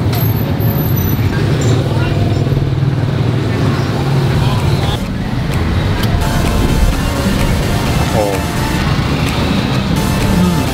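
Steady street traffic with a low engine rumble, and other people talking in the background.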